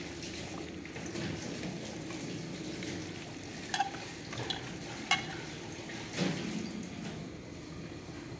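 A hand squelching raw meat pieces through wet spice paste in an aluminium bowl. There are a couple of sharp clinks against the metal bowl about four and five seconds in, and a louder knock just after six seconds.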